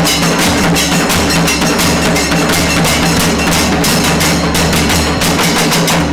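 Kailaya vathiyam ensemble playing: shoulder-slung barrel drums beaten with sticks in a fast, even rhythm, over steady held notes from long brass horns and conch shells.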